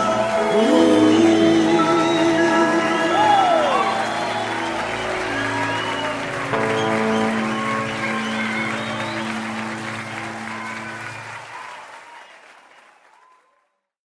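Closing bars of a live song: the band's held final chords and a gliding sung phrase under audience applause, fading out to silence shortly before the end.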